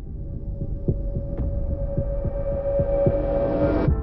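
Cinematic soundtrack of low, throbbing pulses under a steady tone, with a rising swell that cuts off suddenly just before the end.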